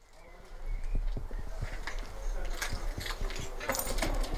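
Outdoor ambience from a moving handheld camcorder's microphone: a low wind rumble with a run of light knocks and clicks, fading in at the start.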